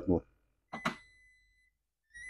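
Toshiba vacuum-pressure IH rice cooker's control panel answering a button press: a click, then a single steady high electronic beep held for about a second.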